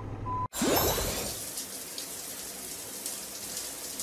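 A toy fire truck's backing-up beeps over a low motor hum break off suddenly about half a second in. A splash with a short rising whoosh follows, then a steady rain-like hiss of water spraying.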